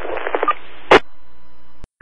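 Two-way radio traffic on a fire-dispatch scanner between transmissions: a sharp squelch burst about a second in, then a stretch of open-channel hiss with faint steady tones that cuts off with a click just before the next voice.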